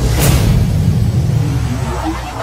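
Outro sound effect: a swoosh about a quarter second in, over a low car-engine rumble.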